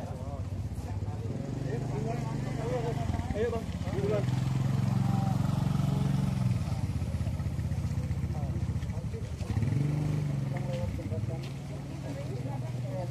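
An engine running steadily, its speed stepping up about four seconds in, dropping back a couple of seconds later, and rising briefly again near the tenth second. Faint voices underneath.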